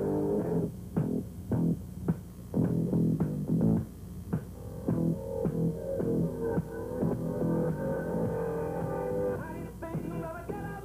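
Instrumental background music with guitar and bass over a steady beat.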